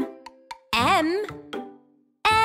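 Children's song with a cartoon plop sound effect: a held sung note ends, and about a second in a voice calls out in a sliding tone. The sound then fades away near the end.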